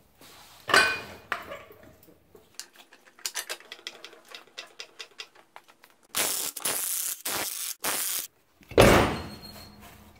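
Tool sounds as a sub-compact tractor's rear wheel is jacked up and taken off: first a run of rapid metallic clicks and clinks, then four short loud bursts of about half a second each. A loud thud comes near the end.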